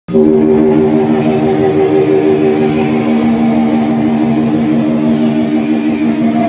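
Distorted electric guitar through an amplifier, holding one loud, steady chord that rings on without a break.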